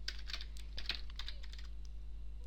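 Typing on a computer keyboard: a run of quick, irregular key clicks as a short name is typed in.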